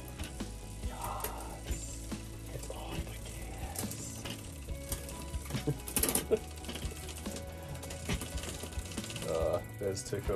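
Bicycle drivetrain turned over by hand in a workstand: the chain runs through a Shimano Deore 10-speed rear derailleur and over the cassette, with scattered mechanical ticks and clicks.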